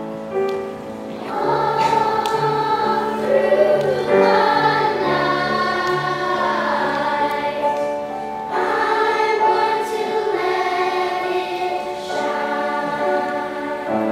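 Children's choir singing in unison with piano accompaniment, the voices entering about a second in after a few piano notes and going on in phrases with short breaths between them.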